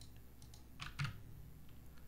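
A few faint computer keyboard keystrokes, the clearest two close together about a second in, over a steady low hum.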